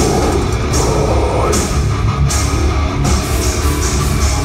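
Metal band playing live and loud: distorted electric guitars over a drum kit, heard from within the crowd.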